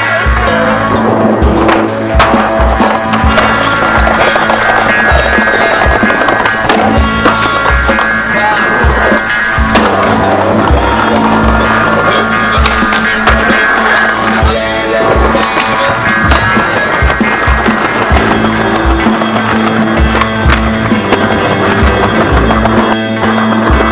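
Music with a steady bass beat over skateboard sounds: wheels rolling on pavement and repeated sharp clacks of the board popping and landing.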